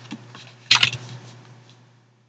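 Tarot cards being handled and laid on a table: a quick cluster of card snaps and rustle about three quarters of a second in, then soft fading rustle, over a faint steady low hum.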